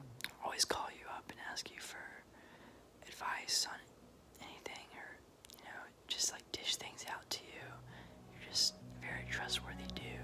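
A young man whispering in short phrases with pauses between them. Soft background music comes back in low near the end.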